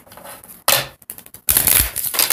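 A tarot card deck being shuffled by hand: a short flutter of cards about two-thirds of a second in, then a longer, louder rapid rattle of cards from about a second and a half in.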